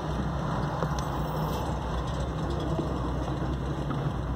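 A car engine idling steadily at a standstill in traffic, a constant low hum with street noise around it.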